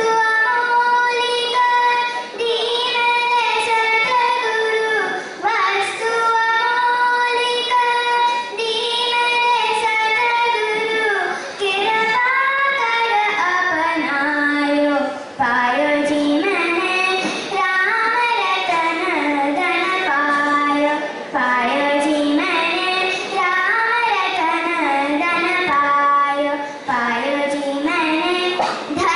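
A young girl singing a slow melody solo into a microphone. In the first half she holds long, high notes; from about halfway the tune drops lower and moves more.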